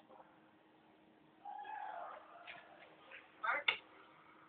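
A drawn-out, meow-like call, slightly falling in pitch, starting about a second and a half in. A few faint ticks follow, then a short loud vocal burst near the end.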